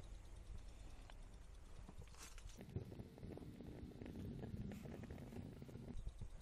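Large homemade penny-style alcohol stove burning as it starts to bloom: a faint, low, uneven rumble of the flame that grows louder a little past halfway as the flame flares up.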